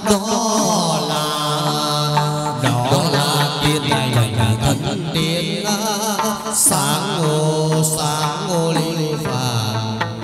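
Hát văn (chầu văn) ritual singing: a voice carrying a wavering, heavily ornamented melody over instrumental accompaniment, with occasional sharp percussion strikes.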